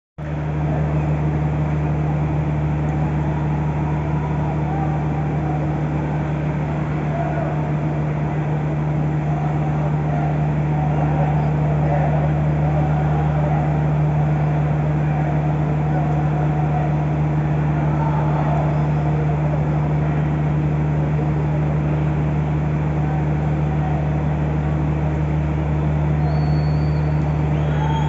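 A steady low hum with a constant pitch, under faint distant voices of a small group of spectators in a large, mostly empty stadium.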